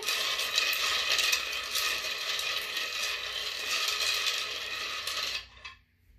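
A set of small rune pieces being shaken and mixed together: a dense clatter of many small clicks that stops suddenly about five and a half seconds in.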